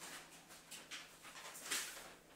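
Loose sheets of paper and sheet music being handled and shuffled, rustling faintly in short sweeps, the loudest near the end.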